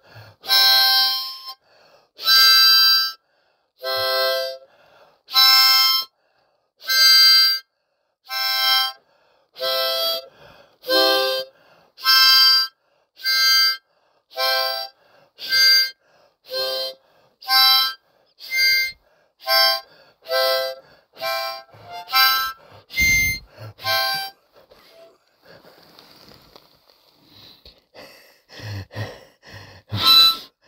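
Harmonica played in short, separate chord blasts with silence between them. The blasts come faster as it goes, from about one every one and a half seconds to nearly two a second, and stop about 24 seconds in.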